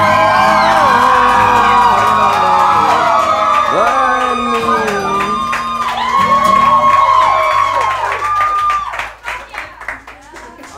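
A small audience cheering, whooping and shouting as the last acoustic guitar chord rings out, with clapping that thins and fades near the end.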